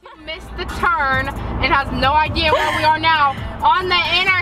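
Young women's voices, loud and without clear words, swooping up and down in pitch, inside a moving car with a steady low road rumble under them.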